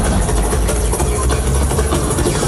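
Loud live electronic music through a concert PA, heard from within the crowd. A deep, steady bass rumble dominates, under a dense, noisy texture.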